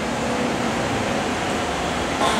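Steady, even background noise in a hall, with no distinct events: a continuous hiss like air-moving equipment running.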